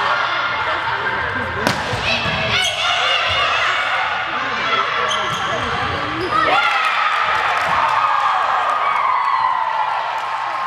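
Volleyball rally in a gymnasium: a sharp smack of the ball being hit about one and a half seconds in, amid shouting from players and spectators. The shouting swells into sustained cheering from about six and a half seconds in as the point ends.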